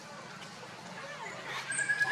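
A faint steady background hum, then near the end a short, high-pitched animal call.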